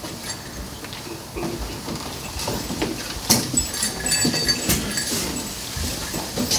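Irregular knocks of wooden shepherds' staffs with a light metallic jingle, the strikes coming thicker in the second half.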